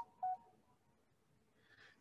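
A single short electronic beep about a quarter of a second in, then near silence.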